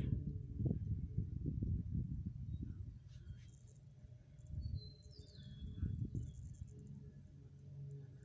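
Low, uneven rumble on the phone's microphone, with a couple of faint, high, falling bird chirps about three and five seconds in.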